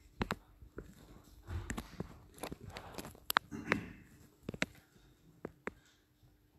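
Footsteps of a person moving about, with scattered sharp clicks and knocks at irregular intervals, about a dozen over the few seconds.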